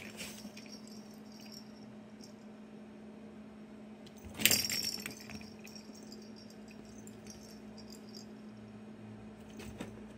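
Toy balls clattering inside a cardboard scratcher box as a cat paws at them through its holes: a short burst of rattling clicks about four and a half seconds in, with a few faint clicks near the start and the end.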